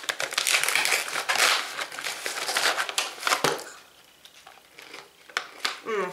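A plastic snack pouch crinkling as it is handled and opened, with many small crackles for about three and a half seconds, then only a few faint clicks.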